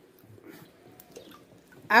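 Faint wet squelching of a wooden spoon stirring thick, thickening soap batter in a plastic basin, as it is worked toward trace; a woman's voice starts up near the end.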